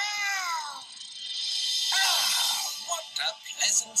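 Cartoon soundtrack played from a computer: a high pitched glide sweeping downward at the start, then music with a shimmering high sparkle about two seconds in, and short cartoon voice sounds near the end.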